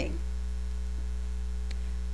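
Steady electrical mains hum from the audio system during a pause in speech, with one faint tick near the end.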